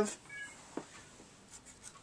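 Faint light clicks and taps of small plastic toy robot figures being handled on a wooden tabletop, a single click before the middle and a few more in the second half.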